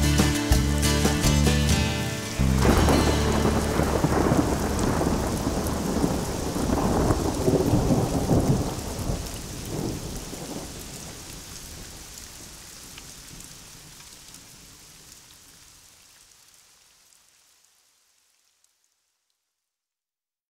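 The song's last notes stop about two seconds in, giving way to recorded thunder rumbling and rain falling, which slowly fades out.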